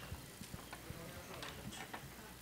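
Faint, irregular clicks and knocks over low murmuring voices.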